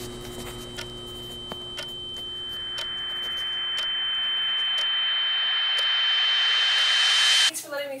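Film sound-design riser: a high, steady ringing tone over a rushing swell that grows louder for several seconds, then cuts off abruptly near the end.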